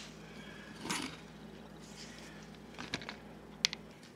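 Quiet handling noise: a soft rustle about a second in, then a few light clicks and one sharper tap near the end as a plastic bowl resting on a magazine is lifted off the floor.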